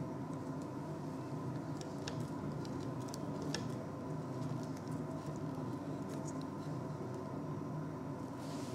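Steady electrical-sounding room hum, with scattered faint light clicks and taps as gloved hands handle the glass burette in its wooden clamp.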